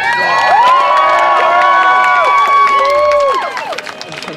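Crowd of spectators cheering and shouting, many voices holding long yells together, dying away about three and a half seconds in.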